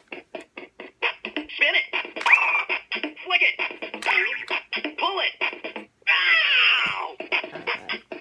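Bop It Extreme 2 electronic toy playing its rapid electronic beat and music from its small speaker, with its recorded voice sounding over the music as a solo game starts.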